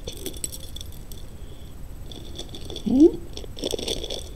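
Glass bead necklace and costume jewelry clinking and rattling as they are handled and laid down on the pile: scattered light clicks, a cluster near the start and more through the second half.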